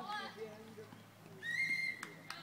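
Shouts on the pitch at the start, then a single referee's whistle blast about one and a half seconds in, one steady shrill note held for about half a second.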